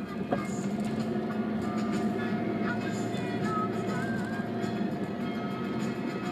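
FM radio music playing over the steady engine and road drone of a moving taxi.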